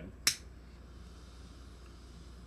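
A single sharp click about a quarter second in, then faint steady room noise.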